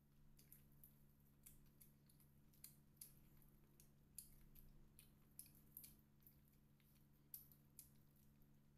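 Faint, irregular crisp crackles of fried chicken's crunchy breading being torn apart by hand, a few louder snaps among them, over a low steady hum.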